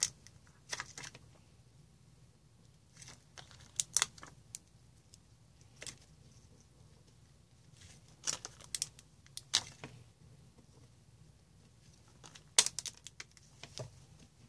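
Short scattered clicks, taps and crinkles of pearl embellishments, their plastic packing and the card being handled on a craft table, with the loudest cluster near the end.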